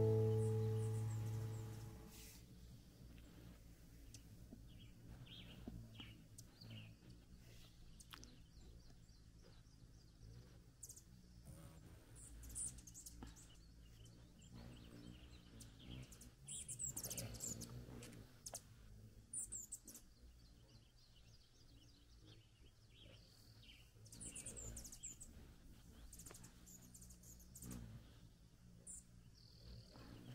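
A faint strummed guitar chord dies away over the first two seconds. After that there are scattered thin, high chirps from hummingbirds squabbling around a sugar-water feeder, over quiet outdoor ambience.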